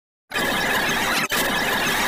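A loud, harsh jumble of many cartoon clip soundtracks played over one another, with a steady high tone running through it. It starts abruptly about a third of a second in and breaks off for an instant just past the first second.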